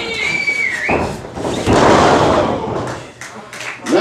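A drawn-out whistle from the crowd, then a heavy thud about a second in as a wrestler's dropkick lands and bodies hit the ring mat, followed by a short rush of noise and a few taps.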